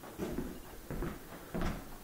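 Footsteps on the floor of an empty home: three soft steps about two-thirds of a second apart.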